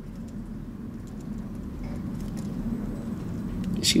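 A steady low rumble of room background noise that grows slowly louder, with a few faint ticks over it.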